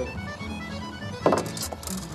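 Background music with held string-like tones. A sharp knock sounds a little over a second in, followed by a few light clicks.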